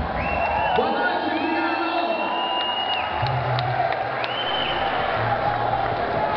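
Concert audience cheering and applauding as a rock song ends, with several long whistles and a couple of low held notes from the band's instruments.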